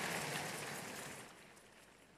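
Faint, even noise of a large packed auditorium fading out over the first second or so, then dead silence.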